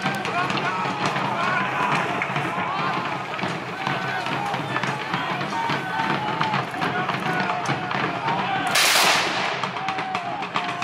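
A volley of black-powder muskets fired together as one loud crack about nine seconds in, over steady crowd voices and drumming.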